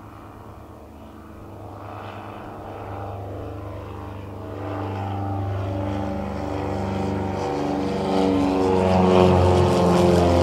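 Britten-Norman BN-2 Islander's twin engines and propellers droning at climb power just after takeoff, growing steadily louder as the plane comes closer.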